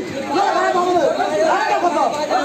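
Crowd chatter: many voices talking over each other at once.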